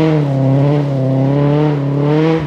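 Renault 5 rally car's four-cylinder engine pulling at steady revs as the car drives away.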